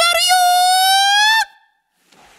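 Isolated male lead vocal with no backing, holding one long note that rises slightly in pitch and cuts off about one and a half seconds in.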